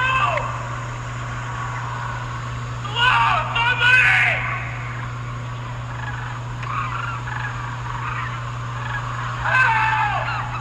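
Strange warbling, gobble-like calls in three bursts, at the start, about three to four and a half seconds in, and again near the end, over a steady low hum. The calls are presented as the call of a skinwalker.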